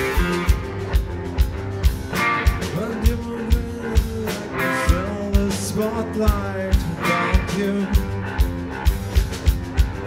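Live rock band playing an instrumental passage: electric guitars and bass holding chords over a steady drum beat, with a drum hit about twice a second.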